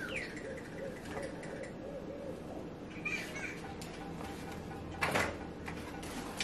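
Handling of a folding camping chair's nylon carry bag and aluminium poles: faint rustling of the fabric, with a brief louder rustle or rattle about five seconds in.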